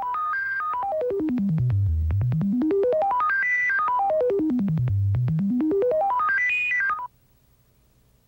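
Synthesizer playing a fast run of short stepped notes that sweeps down and up in pitch in long waves, then cuts off suddenly about seven seconds in: a musical bridge marking a scene change in a radio drama.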